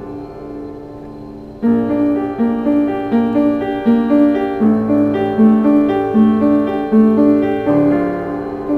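Yamaha piano playing a slow original piece: a held chord fades away, then about a second and a half in a steady repeated figure of notes in the low-middle register starts, roughly one and a half notes a second.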